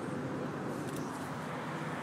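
Steady outdoor background noise: an even, constant rush with no distinct event.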